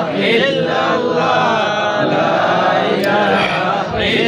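Several voices chanting zikr together in a continuous, unbroken melodic line.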